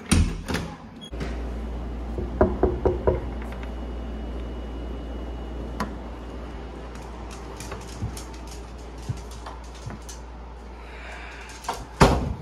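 Interior wooden door being opened: a sharp click of the latch at the start, then a few short squeaks. A steady low hum sets in suddenly about a second in, with light clicks scattered through the rest.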